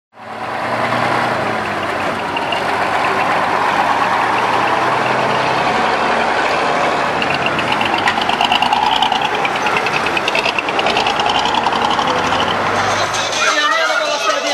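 Heavy truck engines running in a line of standing water tankers, with voices over them. Near the end the sound gives way to a crowd chattering.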